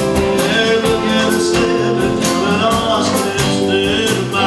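Live band playing a country-rock song, with strummed acoustic guitar and electric guitar over a steady beat.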